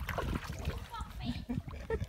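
Indistinct voices with light splashing of river water as a man climbs down off the rocks and wades in.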